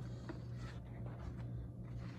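Faint rustling and scraping of old paper photographs and a cardboard folder being handled on a countertop, over a steady low hum.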